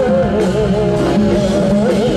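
Male singer singing live into a microphone with a wavering vibrato, over a steady live band accompaniment.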